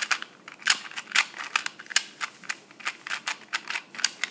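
YJ GuanPo 2x2 plastic speed cube being turned rapidly in the hands: a fast, irregular run of sharp plastic clicks, about five a second, as the layers snap round, kind of loud.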